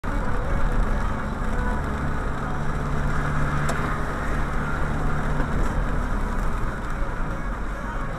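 Steady road noise inside a moving car's cabin: low engine hum and tyres running on a wet road, with one faint click a little past the middle.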